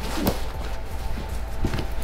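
Soft rustling of clothing as a folded long-sleeved top is pressed and tucked into a soft-lined suitcase, over a steady low hum.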